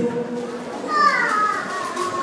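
A young child's voice in the room: one high call about a second in, falling in pitch as it goes.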